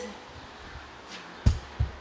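A quiet pause broken by a single sharp, low thump about one and a half seconds in, followed by a couple of softer thumps.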